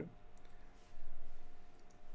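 A few faint clicks of a computer mouse over a low steady hum.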